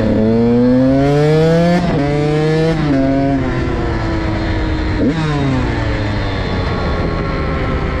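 KTM SX 85's single-cylinder two-stroke engine accelerating hard under load: the pitch climbs, drops at a gear change about two seconds in, climbs again, then falls as the throttle closes. There is another quick gear change around five seconds in, and the engine then winds down steadily.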